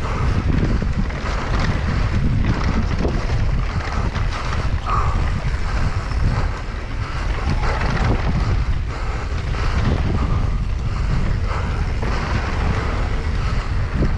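Heavy wind buffeting on an action camera's microphone during a fast mountain-bike descent of a dusty dirt trail, a steady low rumble, with scattered short knocks and rattles from the tyres and bike over the bumps.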